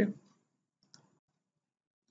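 The end of a spoken "okay", then a single short, faint click about a second in.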